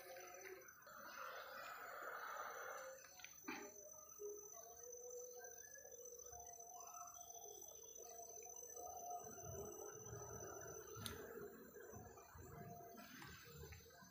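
Very faint forest ambience at dusk: a thin steady high-pitched whine with scattered faint short calls and light rustling, and one sharp click about eleven seconds in.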